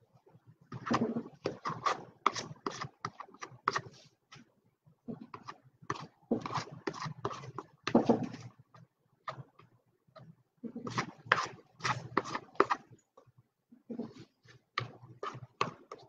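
Irregular clusters of light clicks and knocks, several quick strokes at a time, separated by short pauses.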